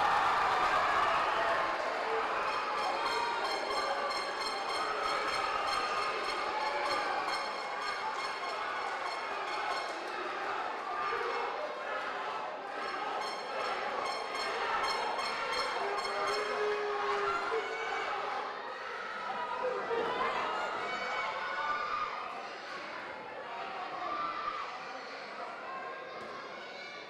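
Arena crowd at a kickboxing fight, many voices shouting and cheering at once, loudest in the first seconds and easing somewhat towards the end.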